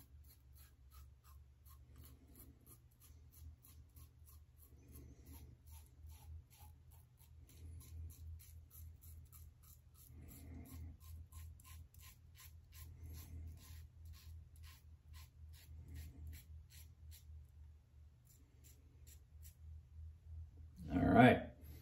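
Faint scraping of a Leaf Twig safety razor cutting stubble through lather, in short strokes about three a second, with a low steady hum underneath.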